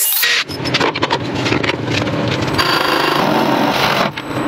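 Woodturning shop sounds: a cordless drill drives screws into a wooden disc near the start, then a wood lathe motor runs with a tool scraping on the spinning wood.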